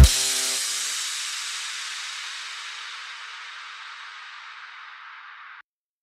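Ending of a psytrance track: the last beat stops and a hissing tail fades out over about five seconds, then cuts off suddenly into silence.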